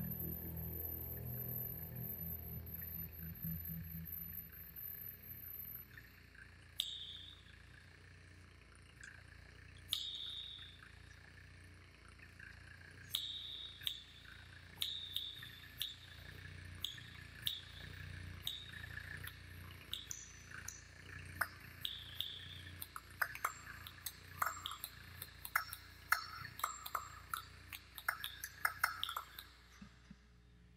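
Recorded sound poetry of mouth noises: a low steady hum that fades over the first six seconds, then tongue clicks against the roof of the mouth, a few seconds apart at first and coming quicker and denser toward the end.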